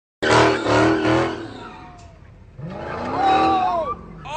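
A Dodge Charger's Hemi V8 revving hard in a burnout, with three quick surges in the first second. It then eases off and builds again near the end, with shifting squealing tones.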